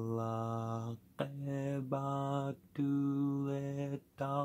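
A man chanting a Quranic verse in Arabic, in long, level held notes: three phrases with short breaks between them.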